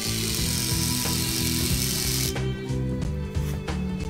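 A small electric DC motor on a K'nex claw machine runs with a drill-like whir for a little over two seconds, then stops, over background music.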